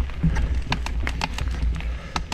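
Mountain bike rolling along a dirt trail: irregular clicks and rattles as it goes over bumps, over a steady low rumble of wind on the microphone.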